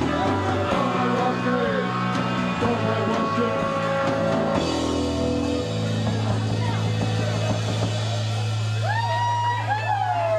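Live rock band playing loud and without a break: electric guitar, bass guitar and drum kit, with the bass settling on one long held low note about halfway through. A voice comes in with sliding calls near the end.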